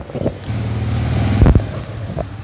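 A low, steady machine hum, with a loud thump on the microphone about one and a half seconds in.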